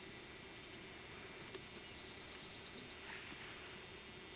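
A songbird's rapid, high trill: a run of about a dozen short notes, around nine a second, lasting about a second and a half, faint over a steady hiss.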